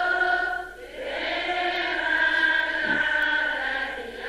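A group of voices chanting in unison, Buddhist devotional chanting in long held lines, with a short pause for breath about a second in before the next long phrase.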